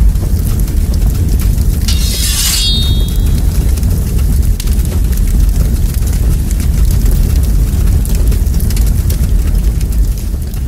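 Loud, steady deep rumble of a fire-and-explosion sound effect, with a brief crackling whoosh about two seconds in.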